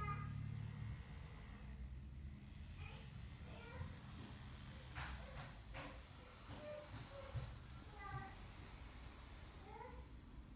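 A toddler's short, high-pitched squeals and babbling sounds, a few of them spread through the clip, over a low rumble of handling noise. About five seconds in come a few short clicks or rattles from toy handling.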